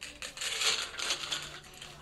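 A plastic bottle of vitamins rattling, a quick run of small clicks as the tablets or gummies inside are shaken and handled.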